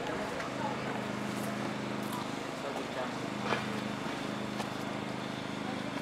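Outdoor street background: a steady low mechanical hum under a general noise of the town, with faint voices and a sharp click about three and a half seconds in.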